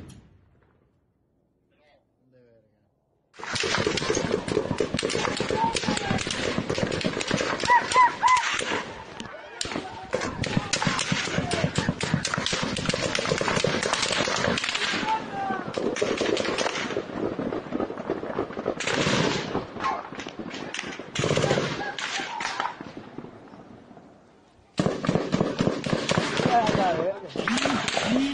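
Rapid gunfire in long, dense bursts, starting a few seconds in, breaking off briefly, and returning in shorter bursts near the end.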